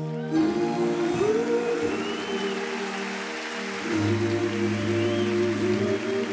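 Live concert music from a band: held chords with a gliding melodic line over them, and a low bass note entering about four seconds in.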